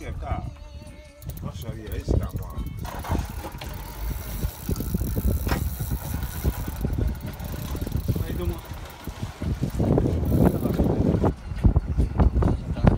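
A boat's engine running under way, with wind buffeting the microphone and water noise, as the boat motors up on a hooked fish to win back line. It grows louder about ten seconds in.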